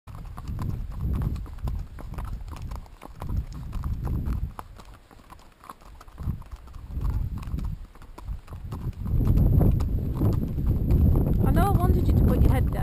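Horse hooves clip-clopping on a gravel track, heard from the saddle, over gusty wind on the microphone that grows louder about nine seconds in.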